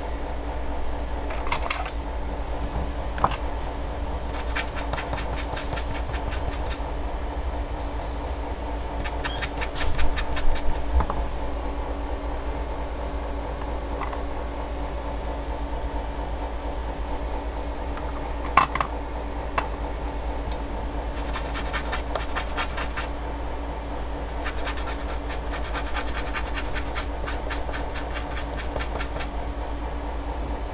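Runs of rapid scratching strokes from a small tool worked across the solder balls of a reballed phone CPU chip, over a steady hum, with a few sharp clicks in between.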